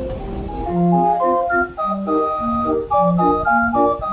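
A small keyboard pipe organ with a rank of brass pipes playing a bouncy tune, bass notes alternating with chords, starting just under a second in. Before it, there is the low rumble of passing train cars with faint music.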